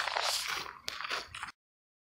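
Footsteps crunching on a gravel path, with a sharp click just under a second in; the sound cuts off abruptly into complete silence about a second and a half in.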